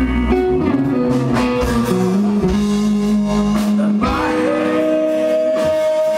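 A live rock band playing, with an electric guitar leading in long held notes that step and bend over bass and drums.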